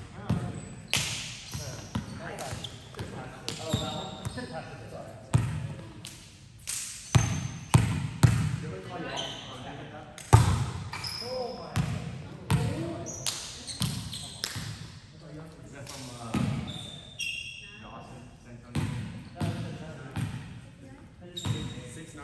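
Volleyball rally in a large gym: a series of sharp hits on the ball, echoing around the hall, with short high squeaks from sneakers on the court floor near the middle and players' voices calling out.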